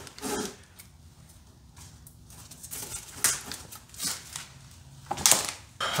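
Scattered clicks, scrapes and rustles of the old motorized antenna's cable, tape tied to its end, being handled and pulled out through the fender well. A louder scrape comes about five seconds in.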